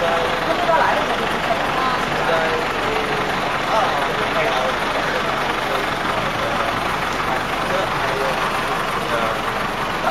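Steady running noise of a slow-moving vehicle heard from inside its cabin, with indistinct talk mixed in.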